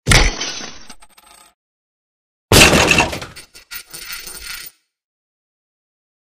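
Sound effect of an alarm clock being smashed: a sudden loud crash with clinking of breaking glass and metal that dies away over about a second and a half. A second loud crash-like burst follows about two and a half seconds in and fades over about two seconds.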